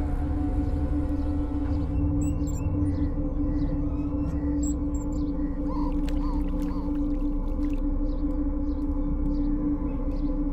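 Ambient film-score drone: a low sustained tone held steadily over deeper layers, with small high bird chirps repeating over it from about two seconds in.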